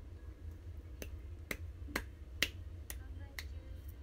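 Six light, sharp clicks of long fingernails, about two a second, over a steady low hum.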